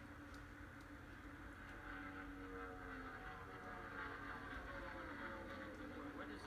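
NASCAR Cup Series stock cars' V8 engines running at racing speed, heard faintly from a television broadcast through the TV's speaker. The engine note sags in pitch through the middle and then holds steady.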